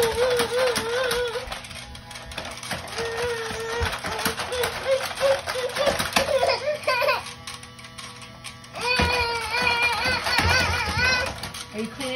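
Toy upright vacuum clicking and rattling as it is pushed back and forth, mixed with a toddler's wavering vocal sounds, the loudest about three quarters of the way through.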